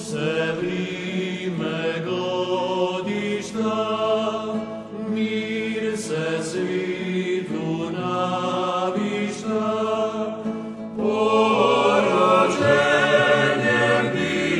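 Choral music: a choir singing a slow, chant-like piece, growing louder about eleven seconds in.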